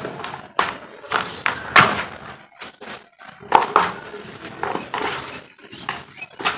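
Hands crumbling dry, powdery earth and letting it pour back into a plastic tub: a run of short, gritty rustling pours and crunches, with a brief lull a little before the middle.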